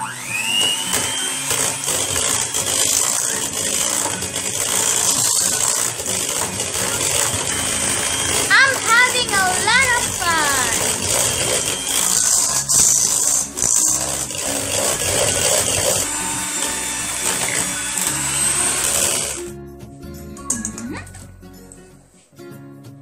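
Electric hand mixer running steadily, its beaters whisking cake batter with an egg in a stainless-steel bowl. The motor spins up with a short rising whine at the start and cuts off near the end.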